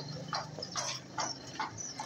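An animal calling over and over, about five short calls evenly spaced at roughly two a second, over a low steady hum.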